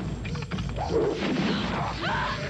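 Film trailer soundtrack: heavy booming, crashing impacts mixed with dramatic music, with pitched swells through the middle and end.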